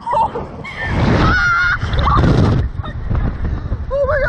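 Girls screaming on a Slingshot reverse-bungee ride, two short high-pitched shrieks about a second and two seconds in. Wind rushing over the camera's microphone as the capsule swings is heard with them.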